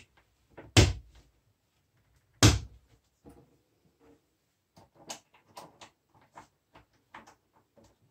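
Plastic cover caps snapped onto the arms of concealed cup hinges: two sharp clicks about a second and a half apart, then a run of faint light clicks and handling from about five seconds in.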